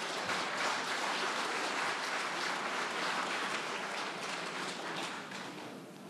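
Audience applauding, a dense patter of many hands that dies away near the end.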